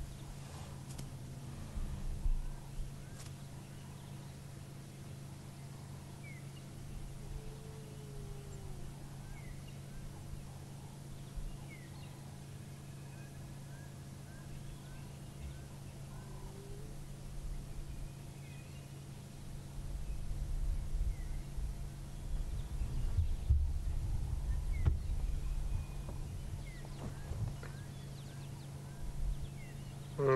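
Quiet bush ambience: faint short bird chirps scattered throughout over a steady low hum, with low rumbling noise during the last third.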